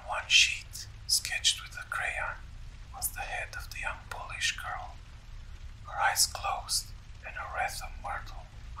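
A person whispering, talking on in short breathy phrases with sharp hissing sibilants, over a steady low background rumble.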